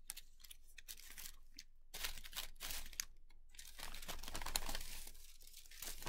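Tissue paper rustling and crinkling as it is handled, in several short, irregular bursts from about two seconds in.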